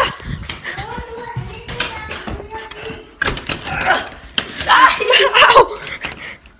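Excited children's voices yelling and laughing without clear words, loudest in the second half, over scattered knocks and rustle from a jostled handheld phone.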